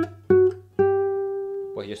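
Classical nylon-string guitar picked one note at a time, playing a G major scale: two quick notes, then a third that is left ringing for about a second.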